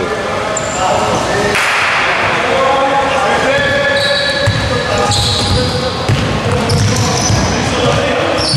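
Basketball game sounds on a hardwood gym floor: sneakers squeaking in many short squeaks at different pitches as players cut and stop, and the basketball bouncing on the court.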